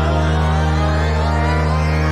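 Dark electronic intro music: a low synth chord held steady, with a wavering higher layer above it.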